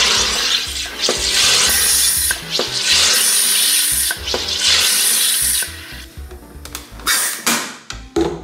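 SodaStream Fizzi One-Touch sparkling water maker carbonating a bottle of water: CO2 is injected in repeated hissing bursts of about a second each as the water bubbles in the bottle, the last burst near the end.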